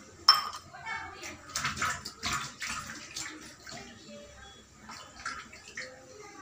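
A steel ladle stirring a thick, wet cocoa cream mixture in a stainless steel pot: one sharp metal knock just after the start, then irregular wet sloshing and scraping.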